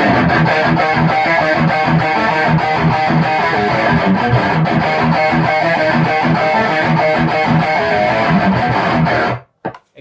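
Electric guitar played through a Sinvertech Distortion #5 pedal into the clean channel of a Bogner Atma amp: fast, continuous distorted riffing that cuts off suddenly near the end.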